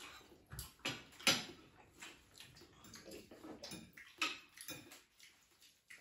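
Cutlery and chopsticks clicking and scraping against plates: a scatter of light ticks and small knocks, about a dozen over some five seconds, growing sparse near the end.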